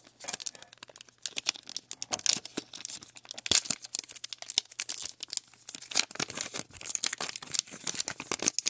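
Foil Pokémon booster pack wrapper crinkling and tearing as it is pulled open by hand: a dense, irregular run of sharp crackles.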